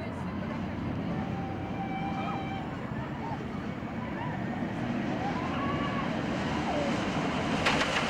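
Inverted roller coaster train running along its steel track, a steady rushing rumble, with faint distant voices over it. A sharp knock just before the end.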